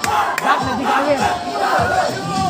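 Crowd of school students cheering and shouting, many voices overlapping in rising and falling calls.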